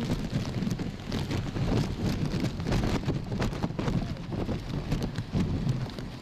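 Heavy typhoon rain pouring down and splashing on a flooded street: a dense, steady hiss of rain with countless small splashes and a low rumble underneath.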